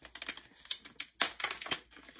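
A small plastic packet crinkling and crackling as it is handled and opened by hand: a quick, irregular run of sharp clicks.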